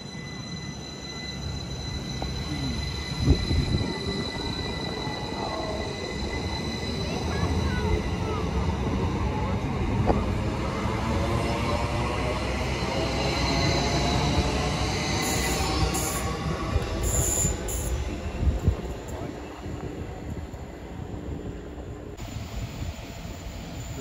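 Northern Class 333 electric multiple unit running along the platform, with a steady high whine and squealing from its wheels. The sound grows louder as the carriages come alongside, then fades as they move away, with a few sharp knocks along the way.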